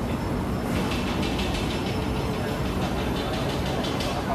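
Steady street-market background noise, a low rumble with no speech, and a crackling hiss in the upper range from about a second in.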